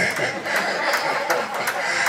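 A man chuckling and laughing into a handheld microphone after a joke.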